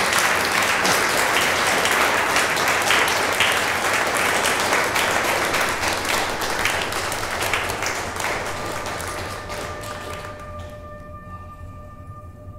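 Audience applauding, many hands clapping in a dense patter that slowly fades away. Near the end, as the clapping dies out, a steady ringing tone with several pitches comes in.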